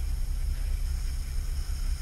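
Steady low hum with a faint hiss above it: background room noise, with no other event.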